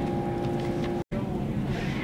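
Steady background hum of room noise, several even tones over a low rumble, broken by a sudden instant of silence about halfway through; after the break a plainer rumble without the hum continues.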